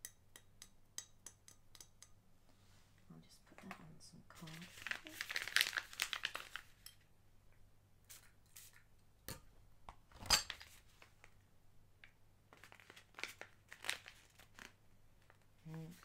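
Close-miked handling of a glass perfume bottle: a quick run of light taps, then a couple of seconds of crinkly rustling, a single sharp knock about ten seconds in, and a few more scattered taps near the end.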